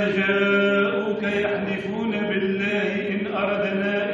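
A man's voice chanting Qur'anic recitation, drawing out long held notes on a steady pitch with small bends.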